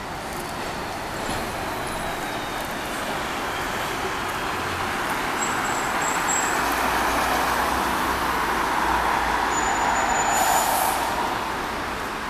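Road traffic noise from a busy street: a vehicle passes close by, growing louder to a peak about ten seconds in and then fading. A short hiss comes near the peak.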